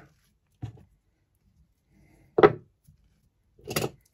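Quiet handling sounds on a plywood workbench: a faint tap just under a second in, then one short, sharp knock about two and a half seconds in, and a soft brief sound just before the end.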